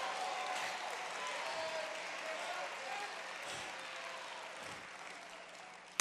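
Church congregation applauding, with a few voices calling out, the sound gradually dying down.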